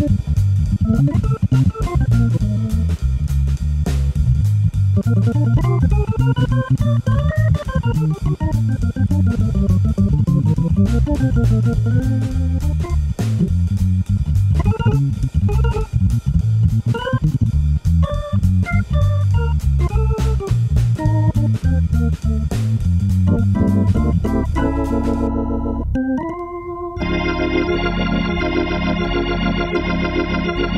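Hammond B3 organ playing jazz: a steady bass line in the low register under fast right-hand runs that climb and fall. Near the end the playing changes to held chords that waver in pitch.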